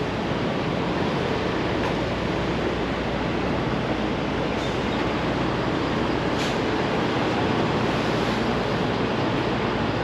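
Steady rumble of idling semi trucks, an even noise with no distinct events apart from a couple of faint ticks.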